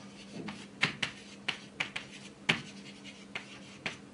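Chalk tapping and scratching on a chalkboard as characters are written: a string of irregular sharp clicks, about eight or nine strokes.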